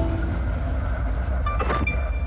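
Steady deep rumble from an intro sound-design bed, with a short whoosh and a couple of brief high chimes near the end.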